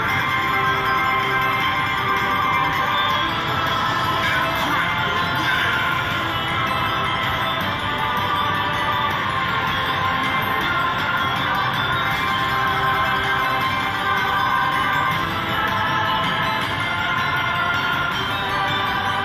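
Crazy Money Gold slot machine playing its win celebration music while the win meter counts up, a steady, unbroken run of stacked tones.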